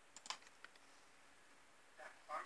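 A computer mouse clicking, a short cluster of faint clicks about a quarter second in and a couple of softer ones just after, over a very quiet room.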